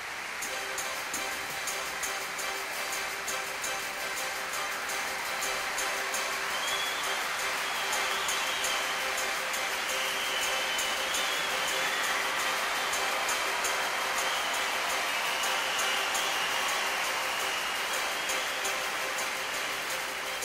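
Background music over a steady rushing noise, with a few held tones and no clear beat.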